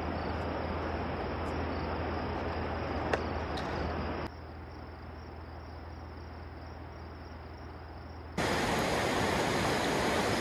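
Steady outdoor hiss of ambient noise, which drops to a quieter level about four seconds in. Near the end a louder, fuller rush of a fast-flowing river comes in.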